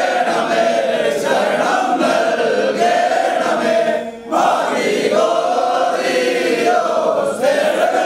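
A group of men singing a devotional chant together in unison, with a short break for breath about four seconds in.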